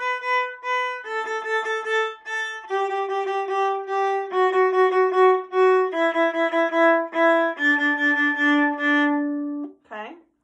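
Viola playing a descending D major scale, stepping down one note at a time from about the B above middle C to the D above middle C, each note bowed several times in a short repeated rhythm. It finishes on a held low D that stops just before the end.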